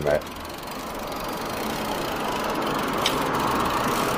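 Road traffic noise from a passing vehicle, a steady rushing sound that grows gradually louder, with a faint click about three seconds in.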